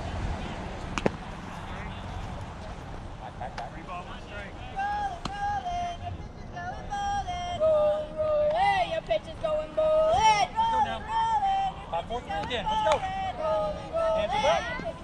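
Girls' high-pitched voices chanting a sing-song dugout cheer, with long held notes, starting about four seconds in. A single sharp knock comes about a second in.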